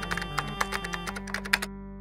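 Computer keyboard typing: a rapid run of keystroke clicks that stops about three-quarters of the way through, over background music with held notes.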